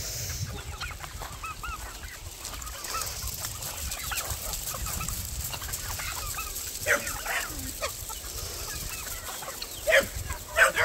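Free-ranging chickens clucking and calling with many short repeated notes, with louder calls about seven seconds in and again at the end, over a low rumble.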